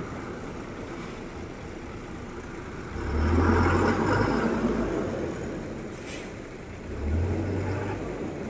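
Truck engine running nearby over a steady rushing background, swelling louder for a couple of seconds about three seconds in and again briefly near the end.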